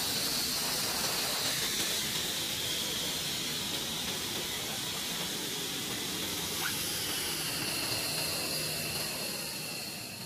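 Jet engines idling on a flight line: a steady high-pitched turbine whine over a rushing hiss, the whine drifting slowly in pitch, fading out near the end.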